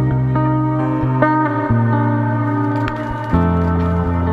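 Background music led by guitar: held, ringing notes over a low bass line that changes note about every second.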